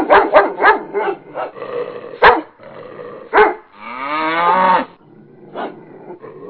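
Dogs barking: a quick run of sharp barks in the first second, then a few louder single barks, and a longer drawn-out call about four seconds in.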